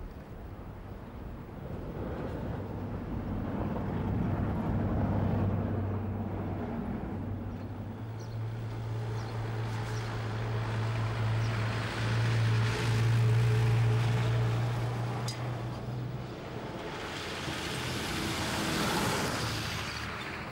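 A 4x4 vehicle's engine running with a steady low hum, with tyre noise on a sandy track. It swells louder as the vehicle draws near, peaks about two-thirds of the way through, then eases off and rises once more near the end.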